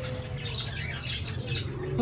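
Pigeons calling in the background, a short falling call at the start, while a small stick scratches lightly through dry, gritty soil.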